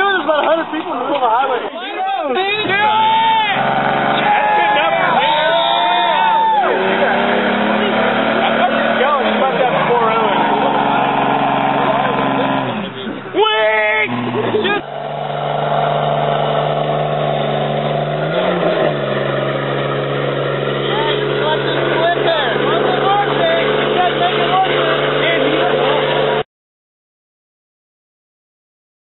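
Car and pickup engines held at high revs during tyre-smoking burnouts. The pitch rises and falls in the first few seconds, then holds mostly steady, with people's voices over it. The sound cuts off suddenly near the end.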